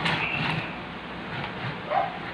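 Plastic wheels of a Transformers Rodimus Prime toy truck rolling across a tabletop as it is pushed by hand, a soft, even rolling noise.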